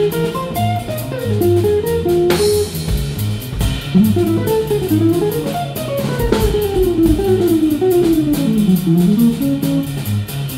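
Jazz-rock trio playing live: electric guitar plays fast single-note runs that climb and fall, over upright bass and drum kit with cymbals.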